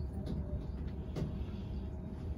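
Riding inside an SF Muni New Flyer trolleybus: steady low rumble of tyres and cabin, with two short rattles, one early and one just past a second in.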